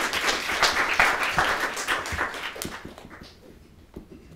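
Audience applauding, many hands clapping together, dying away about three seconds in.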